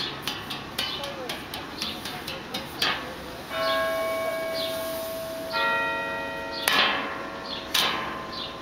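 Percussion instruments played: a run of sharp taps and strikes, then two sustained bell-like metallic tones ringing one after the other, then loud strikes near the end.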